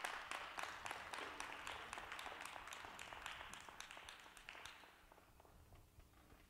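A small group of people clapping, the applause thinning out and fading away about five seconds in.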